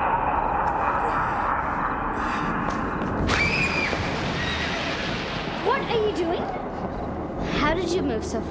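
A horse whinnying a few times from about three seconds in, over a steady rushing noise in the first few seconds.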